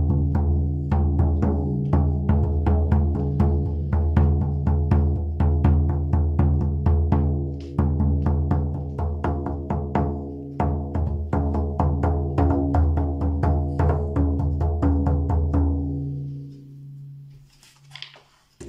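Handheld shaman frame drum struck with a soft-headed beater in a steady run of beats, its deep ring sustained under the strikes. The beating stops about sixteen seconds in and the ring fades away.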